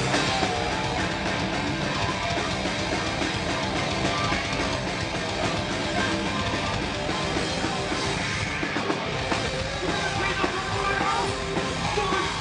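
Metal band playing live: electric guitars over a pounding drum kit, dense and at a steady loudness.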